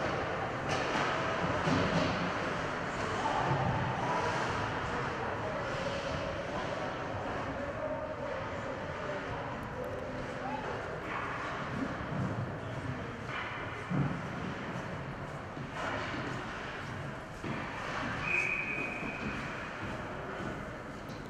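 Ice hockey rink ambience during a stoppage in play: indistinct voices of players and spectators echoing in the arena, with skates on the ice. There is a sharp knock about 14 seconds in and a brief high steady tone near the end.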